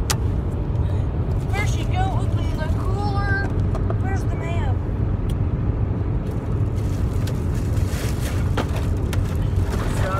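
Steady low rumble of a car heard from inside the cabin. A young voice makes short high wordless sounds from about a second and a half in to about five seconds. Plastic crinkles near the end.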